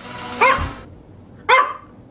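A miniature American Eskimo dog barks twice, about a second apart. Each bark is short and sharp, rising in pitch.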